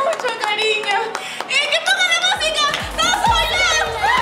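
A woman singing into a microphone with people clapping along; backing music with a deep bass beat comes in about halfway through.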